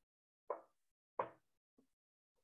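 Two short, faint soft strokes about two-thirds of a second apart, then a fainter third, from a hand-held eraser being swept across a whiteboard.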